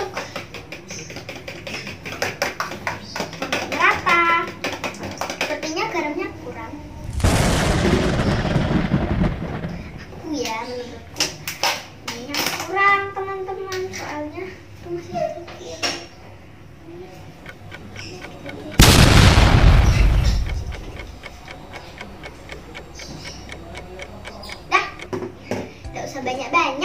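Fork beating a raw egg in a small plastic bowl: irregular light clicks and taps of the fork against the bowl. Two loud rushes of noise, each about two seconds long, come about a third of the way in and again past two-thirds, louder than anything else.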